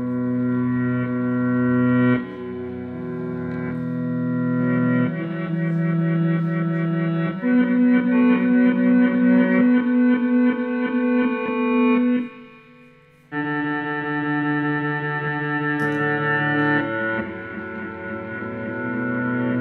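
Electric guitar played through a board of effects pedals, giving held, distorted chords that change every couple of seconds. From about seven seconds in the notes pulse several times a second. Just past twelve seconds the sound briefly drops away, then a new held chord comes back in.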